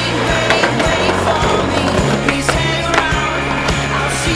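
Skateboard wheels rolling on concrete, with several sharp clacks of the board popping and landing, under a song with a steady bass line.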